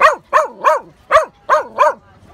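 A black-and-tan dog barking six times in quick succession, about three barks a second, each bark arching up and back down in pitch.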